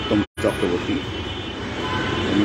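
Voices talking over a steady low background rumble; the sound cuts out completely for a split second about a third of a second in.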